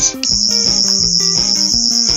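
A toy sonic screwdriver's high-pitched electronic whine with a fast warble. It starts just after the beginning and is held steady, over background music with a steady beat.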